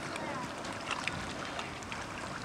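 Motorboat running at speed some way off while towing a tube, a steady low rumble, with small splashes of water lapping close by and faint indistinct voices early on.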